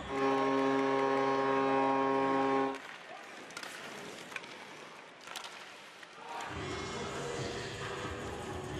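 Arena goal horn sounding one loud, steady chord for about two and a half seconds, signalling a goal, then cutting off sharply. Quieter arena noise with a few sharp knocks follows, and music comes in near the end.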